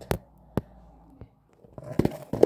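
A few short knocks and taps from handling a phone as it is set down and propped up on a laminate floor. The first knock, just after the start, is the loudest.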